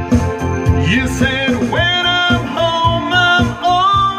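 A man singing into a handheld microphone over instrumental backing music with a steady beat; the voice comes in about two seconds in with long held notes.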